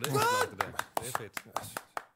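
Closing seconds of a garage-rock recording: a run of sharp, irregular drum or percussion hits with a high vocal whoop that rises and falls, stopping at the end.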